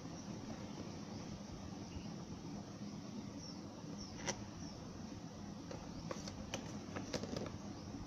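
A cardboard model box being handled: a few faint clicks and scrapes, the sharpest about four seconds in and a cluster near the end, over a steady low room hum.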